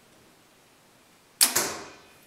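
Compound bow being shot: a sudden sharp crack of the released string about one and a half seconds in, with a second hit right after, fading quickly.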